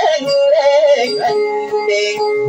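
Dayunday song: a voice sings an ornamented, wavering melody line over guitar accompaniment, then settles on a long held lower note a little past a second in.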